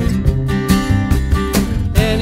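Instrumental stretch of an acoustic rock song: acoustic guitar strumming over upright bass and a drum kit keeping a steady beat, with no singing.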